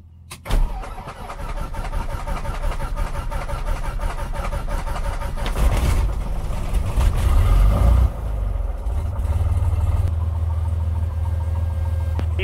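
Cessna 182T's fuel-injected six-cylinder Lycoming IO-540 engine starting, heard from inside the cabin. It comes in about half a second in and builds louder over the first several seconds, then drops back to a steady idle about eight seconds in.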